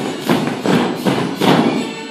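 A group of dancers stamping in heeled character shoes on a studio floor, about five heavy stamps in a row roughly a third of a second apart, with music playing underneath.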